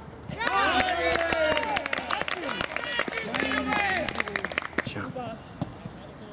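Several people shouting and cheering at once, with scattered hand claps, celebrating a goal; it starts about half a second in and dies down about five seconds in.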